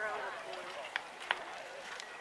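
Background voices talking faintly, with two sharp taps about a second in, a third of a second apart.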